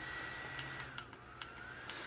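Small electric motor of a rechargeable neck fan whining faintly, its pitch holding steady, then dipping about a second in and climbing back up, with a few light clicks of handling.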